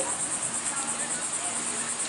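Insects chirping in a steady, high, fast-pulsing trill, over a faint steady low hum.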